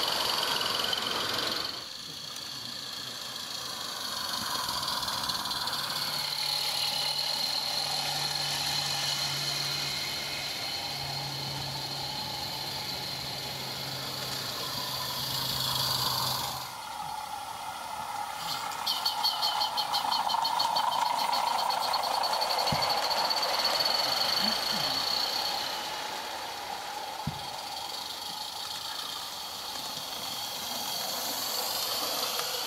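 16mm-scale live steam garden-railway trains running past: steady steam hiss and the running noise of small wheels on the metal track, with a quick run of sharp ticks around twenty seconds in.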